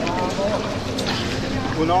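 Voices talking in an echoing indoor pool hall over a steady wash of water noise as a freediver in bi-fins surfaces and reaches the pool wall; a voice starts counting aloud near the end.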